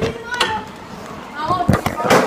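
A few sharp knocks and clatter, with children's voices in the background: the first right at the start, another about half a second in, and two close together near the end.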